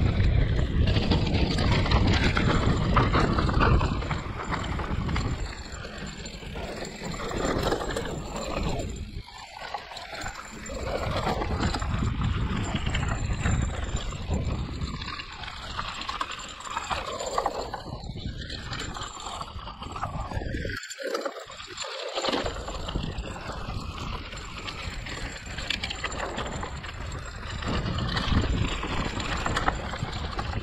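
Hardtail e-mountain bike rolling down a rough dirt and stony trail: steady tyre and rattle noise from the bike over the bumpy ground. It is loudest for the first few seconds, then quieter and uneven, with a brief near drop-out about 21 seconds in.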